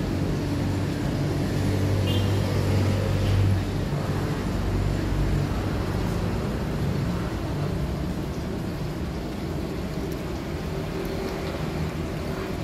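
Low, continuous motor-vehicle engine rumble with a shifting pitch, like traffic running close by.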